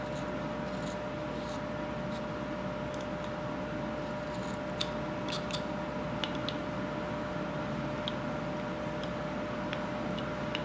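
Whittling knife cutting and scraping wood inside a small ball-in-cage carving: faint, scattered clicks and scrapes of the blade over a steady background hum.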